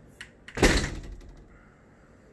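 A light click, then a heavy thump about half a second in that dies away over about a second.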